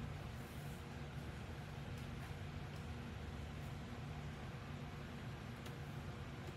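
Steady low hum and hiss of an electric fan running, with a few faint ticks.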